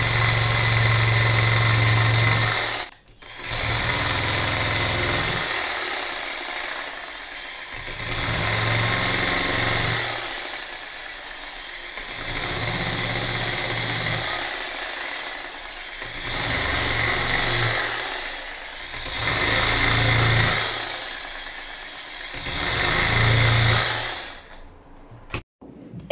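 Handheld electric hair-injection machine running as it punches curly hair into a lace wig base: a buzzing motor with a low hum, louder and quieter in about seven stretches of two to three seconds as it is worked along the lace. The sound stops abruptly near the end.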